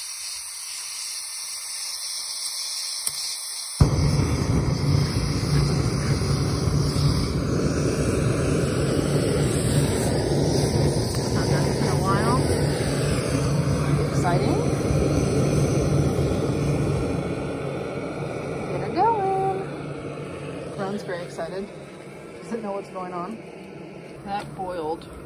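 Compact MSR canister stove on a gas canister: a hiss and a click, then the burner lights with a sudden onset about four seconds in. It burns with a steady, loud rushing sound under a titanium pot of water heating to a boil, and eases after about seventeen seconds. A few short high pitched squeaks come near the end.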